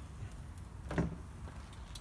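A stainless steel fold-down table on a vehicle's rear door is swung up and folded flat against the door. There is quiet handling noise, with a short knock about a second in and a sharp click near the end.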